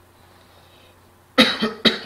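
A person coughs twice in quick succession, close to the microphone, about a second and a half in, after a quiet stretch of faint room hum.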